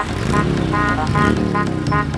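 Background music with a steady beat, over a motorcycle engine running past, its pitch rising and falling several times.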